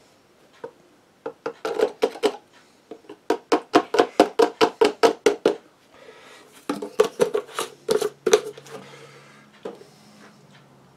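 Handheld static grass applicator being shaken, the 2 mm grass fibres rattling in its plastic cup in three runs of quick strokes, the middle run about five shakes a second. A faint low hum starts near the end.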